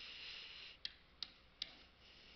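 Faint stylus writing on a pen tablet: a light scratchy stroke, then three small sharp clicks of the pen tip in quick succession in the second half.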